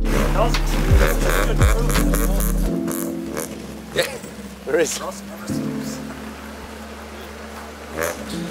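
Toyota AE86 Corolla driving slowly over gravel: engine running and tyres crunching on the stones, with background music that stops about three seconds in.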